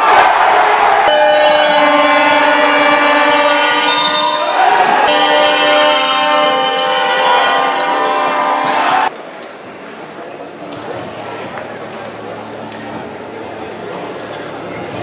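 Basketball game sound in an indoor sports hall: crowd noise swells at the start, then loud steady held tones that shift pitch about halfway. They cut off suddenly about nine seconds in, leaving quieter hall noise with faint ball bounces.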